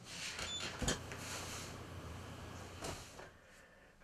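Lowrance HDS 7 chartplotter-sounder being switched on: two faint clicks, about a second in and again near three seconds, over low room hiss, with a brief faint high beep about half a second in.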